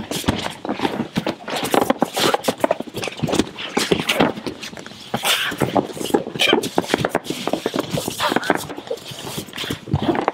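Two men wrestling in a clinch against padded gym walls: a steady, irregular run of thuds, scuffs and shuffling of bare feet on the mat and bodies against the wall pads, with grunting and hard breathing.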